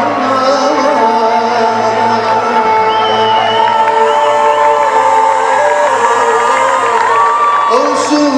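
Live band music with a large concert crowd cheering and singing along, many voices holding long notes together over the instruments.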